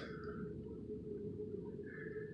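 Steady low background rumble with no distinct event.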